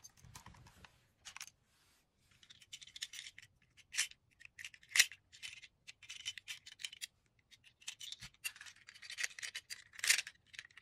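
Small plastic Shift Car toys being handled and picked up, clicking and rattling against one another in quick, irregular bursts. Two sharp plastic clicks about four and five seconds in are the loudest.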